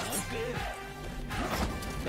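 Action film soundtrack: music with crashing impact sound effects, the strongest hits about a second and a half in.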